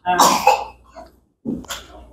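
A person coughing: a loud cough at the start, then a second, shorter one about one and a half seconds in.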